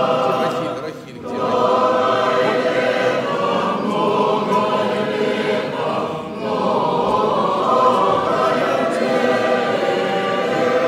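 Church choir singing unaccompanied, several voices in sustained chant, with a short breath pause about a second in and another about six seconds in.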